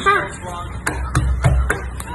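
A balut's shell being tapped and cracked against a wooden tabletop: about five sharp cracking taps with dull knocks under them, in the second half.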